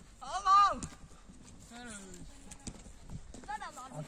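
Children's voices calling out during an outdoor ball game. A loud rising-and-falling shout comes about half a second in, and two fainter calls follow, with a few faint knocks between them.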